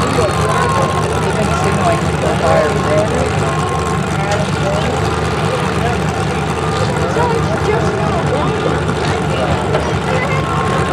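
Demolition derby car engines idling with a steady low rumble, under crowd chatter.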